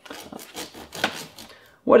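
Kitchen knife scraping and sawing at the casing of a Tofurky vegan roast, which rests on a wire rack in a foil pan: a run of short, irregular scrapes, one louder about halfway through.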